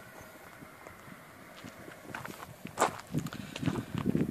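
Footsteps on gravelly, stony ground, a few irregular steps beginning about halfway through.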